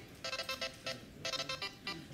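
Electronic alarm ringtone, a short chiming phrase of steady tones played twice, the second a moment after the first: the signal that the timed writing sprint is over.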